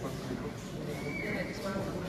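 Indistinct chatter of several people talking at once, with a brief high held tone, like a voice or a squeal, about a second in.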